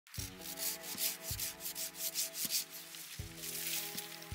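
Hand pruning saw cutting through a plum tree trunk in quick back-and-forth strokes, about three a second. Background music with sustained notes plays underneath.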